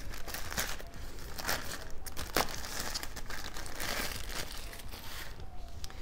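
Small packaging bag being torn open and crumpled by hand: dense crinkling and tearing crackles that thin out about five seconds in.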